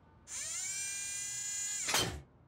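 A buzzy, pitched cartoon sound effect slides up in pitch about a quarter second in, holds steady for about a second and a half, then ends with a short sharp burst near the end.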